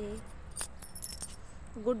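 A brief metallic jingle: a quick cluster of light clinks with a high ringing, about half a second to a second in.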